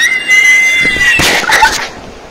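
A high-pitched scream, rising sharply and then held for about a second, breaking into harsh, noisy shrieks before it cuts off near the end.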